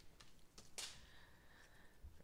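Near silence, with a faint rustle of baseball cards being handled in gloved hands, one brief slide or click a little under a second in.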